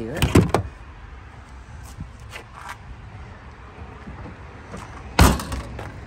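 Rear liftgate of a 2017 Chevrolet Sonic hatchback being shut: one loud slam about five seconds in, after a few seconds of faint handling noise.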